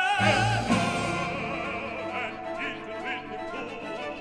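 Live classical orchestra with operatic singing: a voice with wide vibrato over sustained orchestral notes, and a deep low note entering just after the start.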